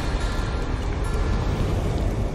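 Cinematic logo-reveal sound effect: a deep rumble under a hissing wash, holding steady and easing off slowly.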